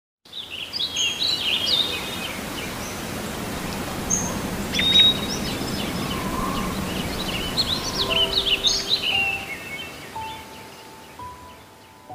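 Birds chirping, many short calls from several birds, over a steady low rush of background ambience. About eight seconds in a soft piano begins a slow melody of held notes while the birdsong fades away.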